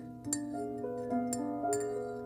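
Metal spoon clinking against the inside of a ceramic mug while stirring a drink: a few sharp, ringing clinks. Background music plays underneath.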